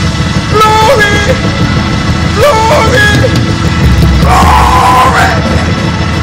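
Loud live church music with a steady low beat running throughout, with voices shouting over it in short bursts and one long held shout about four seconds in.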